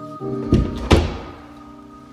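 Background music with sustained tones, over which a closet door is pushed shut with two thuds, one about half a second in and a sharper one about a second in.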